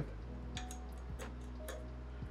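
A few light ticks, about two a second, from the 3D printer's frame parts being handled, over a low steady hum and faint background music.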